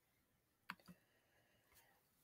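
Near silence with a faint computer mouse click about two-thirds of a second in, then a softer second click just after, turning the page of an on-screen e-book.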